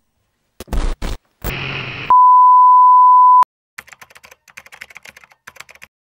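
A few sharp knocks and a short burst of noise, then a loud steady electronic beep on one pitch lasting just over a second, followed by about two seconds of irregular clicking like typing on a computer keyboard.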